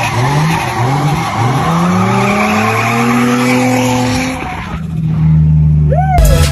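Nissan 350Z drift car's engine revving up and down in quick repeated pushes, with tyres skidding under it. About four and a half seconds in the revs drop, and the engine holds a steady lower note.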